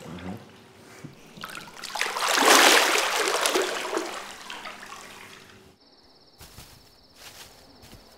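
Swimming-pool water splashing and sloshing, swelling to a loud splash a couple of seconds in and dying away. Near the end it gives way to a quieter stretch with a faint, steady, high-pitched trill.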